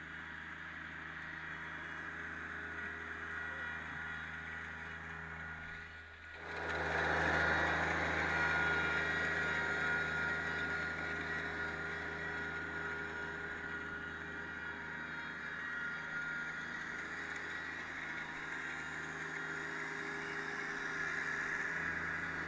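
Rural King RK24 compact tractor's diesel engine running steadily as it drives, pulling a pine straw rake through brush. It dips briefly about six seconds in, then comes back louder and settles.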